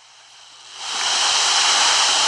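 A steady hiss on the recorded phone line, fading in about half a second in and then holding.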